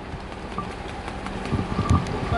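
Street traffic noise with a vehicle engine running steadily. A few low knocks of microphone handling come near the end as the handheld mic is passed along.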